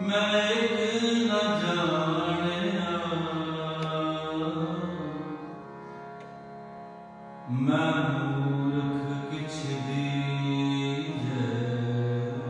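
Shabad kirtan: Sikh devotional singing with instrumental accompaniment, in two long sustained phrases, the second entering sharply about seven and a half seconds in.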